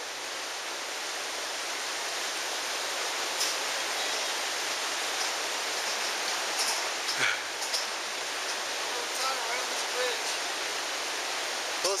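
The Colorado River rushing steadily below a footbridge: an even wash of water noise with no let-up. A few faint clicks sit on top of it.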